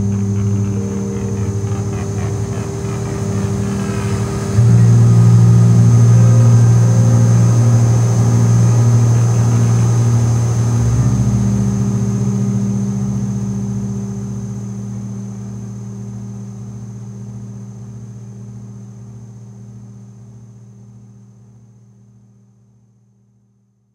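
Experimental ambient drone music: sustained low droning tones with a thin, steady high whine above them. It swells about four and a half seconds in, shifts near the middle, then slowly fades out.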